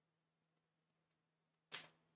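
Near silence: room tone with a faint steady hum, broken by one brief soft noise near the end.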